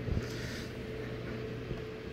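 AC Infinity AirPlate S7 dual 120 mm cabinet fan running steadily, a low hum with a steady higher tone over it, with a couple of soft knocks from the cord being handled.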